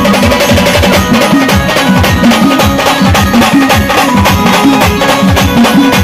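Loud drum-heavy band music played over a truck-mounted loudspeaker system: a fast, steady beat of deep drum hits that drop in pitch, several a second, under a sustained melody.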